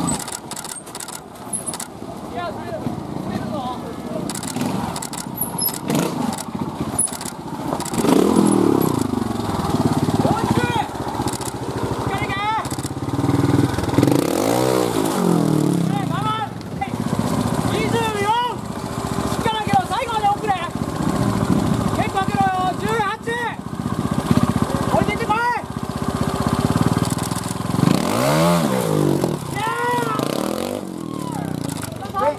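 Trials motorcycle engine idling and blipped repeatedly, its pitch rising sharply and falling back several times, with the biggest revs about a quarter of the way in, at the middle and near the end.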